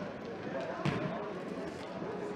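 A football struck once about a second in, a single sharp thud of the ball being kicked or hitting the sports-hall floor, over a steady murmur of voices in the hall.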